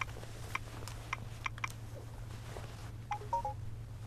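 Mobile phone being handled: a few light taps and clicks, then a short run of electronic beeps a little after three seconds in, over a steady low hum.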